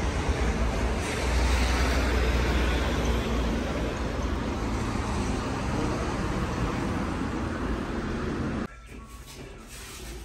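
Street traffic noise, cars on the road passing close by, with a heavy low rumble. It cuts off suddenly near the end, giving way to much quieter room sound.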